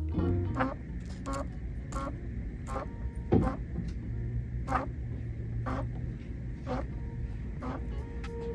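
Coloplast Titan Classic (Genesis) implant pump bulb squeezed by hand to inflate the cylinders, giving a sharp cracking click with each squeeze: about ten clicks, roughly one a second, the loudest near the middle. This cracking on every squeeze during inflation is a known trait of the Classic pump.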